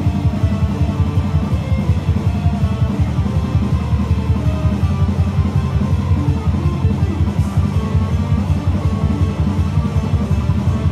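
Electric guitar played live over a backing track with drums: loud, dense rock music with a heavy low end and a steady pulse.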